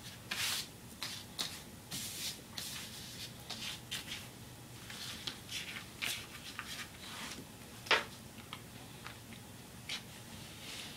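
Hands pressing and stretching pizza dough on a floured counter surface: soft, irregular rubbing and rustling strokes, with one sharper tap about eight seconds in.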